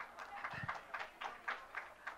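A string of irregular sharp clicks and light knocks, with a low thump about half a second in.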